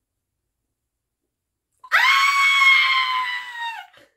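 A high-pitched scream held for about two seconds, starting about two seconds in and dipping slightly in pitch as it trails off near the end.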